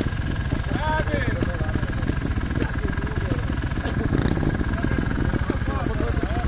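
Trials motorcycle engine idling steadily, a fast even run of low firing pulses with no revving.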